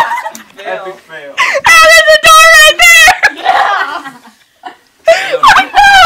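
A girl's high-pitched, warbling shriek of laughter lasting about a second and a half, with softer giggling around it, then another loud burst of laughter near the end.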